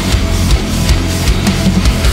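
Loud djent-style industrial metal with distorted guitars and drum kit.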